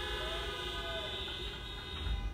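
Car horns honking in a steady, held blare that dies away near the end.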